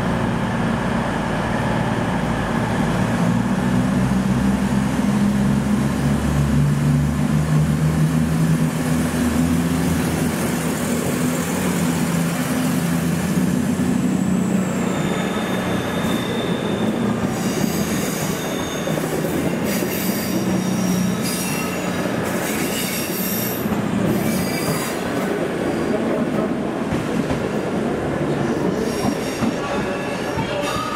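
Arriva CrossCountry Voyager diesel multiple unit running into the platform, its underfloor diesel engines droning steadily. In the second half, high-pitched squealing from the wheels comes and goes over the rolling rumble as the carriages pass.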